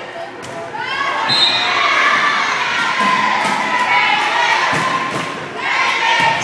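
A volleyball served with a sharp hit about half a second in, followed by girls' voices shouting and cheering through the rally, with more ball hits near the end.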